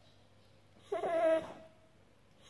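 American Staffordshire Terrier giving one short whine, about half a second long, about a second in, while groggy and recovering from general anaesthesia.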